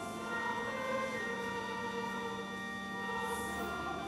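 A choir singing in long held notes.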